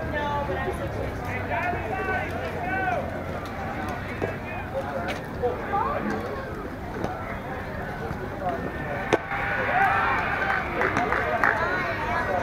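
Players and spectators calling out and chattering, with no one voice clear. A single sharp knock comes about nine seconds in, followed by louder shouting in the last couple of seconds.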